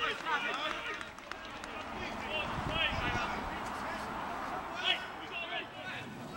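Indistinct shouts and calls from players and spectators at an outdoor football match, with one louder shout about five seconds in.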